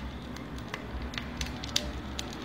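Boiled cassava being pressed through a hand-held plastic Tupperware Fusion Master press: soft squishing of the mash with scattered faint clicks and crackles. The cassava is fairly dry and firm.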